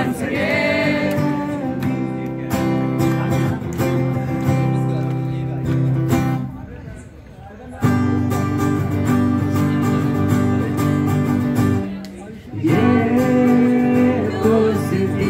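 Acoustic guitar strumming chords in an instrumental break between sung lines. The strumming drops away briefly about halfway through and again near the end, where voices come back in singing.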